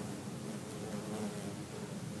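Cicada killer wasp buzzing in flight: a low, steady wing hum that wavers slightly in pitch.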